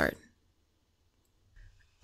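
The end of a woman's spoken word, then near silence, then a faint, brief mouth click near the end.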